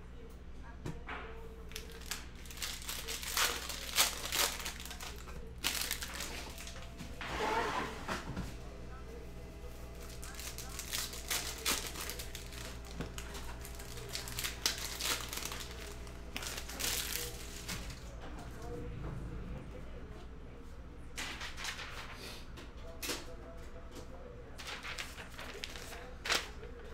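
Cellophane wrapper of a trading-card cello pack crinkling and tearing as it is ripped open by hand, in several bursts of crackling with short pauses between.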